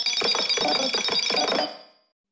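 Electronic jingle from a New Jersey Bell animated logo ident, played back at four times speed so its ringing, bell-like synth tones go by fast and high. It fades out near the end.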